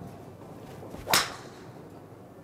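Titleist TSi2 fairway wood striking a teed golf ball: one sharp impact of the metal clubhead about a second in.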